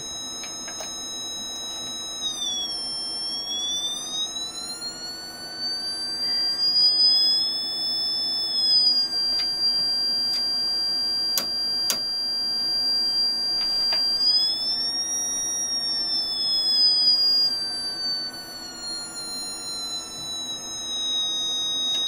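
A small speaker fed by a signal generator plays a high-pitched electronic test tone, its pitch slowly rising and falling twice as the frequency is changed. A couple of clicks sound about halfway through.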